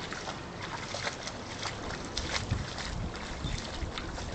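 Dog splashing in the shallow water of a plastic kiddie pool, pawing at it in quick irregular splashes, with wind rumbling on the microphone.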